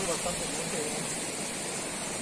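Faint talking in the first second, over a steady high hiss that runs throughout.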